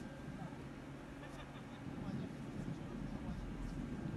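Faint voices of players calling on an outdoor football pitch over a steady low background rumble.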